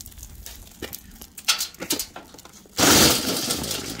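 A shattered tempered glass panel, held together with tape, dropped into a galvanized metal trash can: a loud crash of glass pieces against the metal, about a second long, near the end. Before it come faint clinks of the broken glass being handled.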